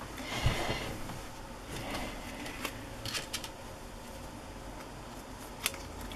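Paper and thin cardstock rustling as they are handled, with a few light clicks.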